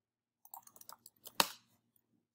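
Computer keyboard typing: a quick run of light key taps for a short word, then one sharper, louder keystroke about a second and a half in, the Enter key.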